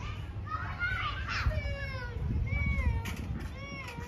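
Children's high-pitched voices calling and squealing, a run of short sliding calls, over a low steady rumble.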